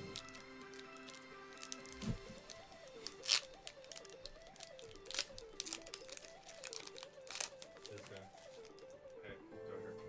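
Foil Pokémon booster-pack wrapper (Hidden Fates) crinkling and tearing as it is opened by hand, in a string of sharp crinkles, the loudest about three and seven seconds in. Quiet background music plays underneath.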